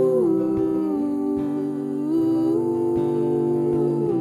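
Wordless passage of a folk song: long held melody notes that slide from one pitch to the next, over a steady plucked acoustic guitar pattern.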